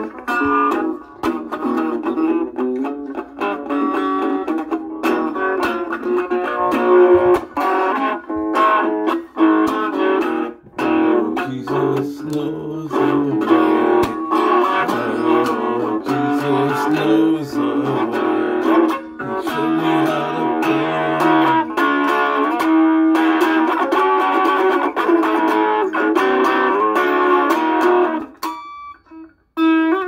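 Solid-body electric guitar played solo, a steady stream of picked single notes and chord tones, with a lower bass line running under the melody through the middle of the passage. The playing breaks off for about a second near the end.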